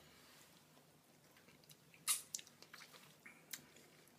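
Wet mouth sounds of a person chewing a bite of ripe, juicy marula fruit: faint, with a sharp smack about halfway through and a few smaller clicks after.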